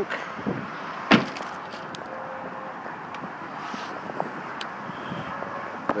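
A single sharp thump from the car's body about a second in, over steady outdoor background noise, with a few faint clicks after it.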